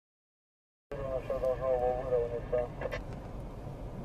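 Silent for about the first second, then a voice, its words unclear, over a steady low rumble inside a car.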